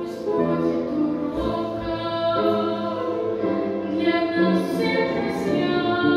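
A Christian hymn played on solo violin with singing, the violin giving way to a woman's singing voice near the end.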